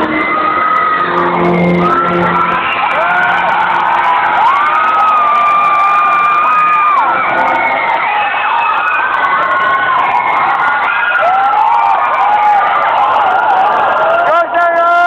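A crowd cheering, shouting and whooping in a large hall, many high voices overlapping, some shouts held long. Low music fades out in the first few seconds.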